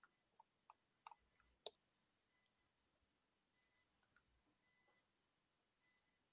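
Near silence, with a handful of faint, short clicks in the first two seconds.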